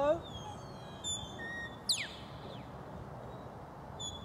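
Sheepdog handler's whistle giving a command to a working dog. A short high note and a brief steady note are followed about two seconds in by a loud, fast falling note.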